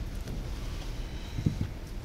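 Low, steady background rumble of room tone, with one soft low thump about one and a half seconds in.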